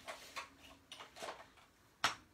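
A sheet of cardstock being folded in half and its crease pressed down. The paper gives a few short, faint scraping rustles.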